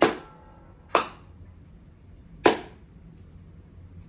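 Three sharp clap-like hits: one at the start, one about a second in, and one about two and a half seconds in. Each trails off quickly and they come at uneven intervals.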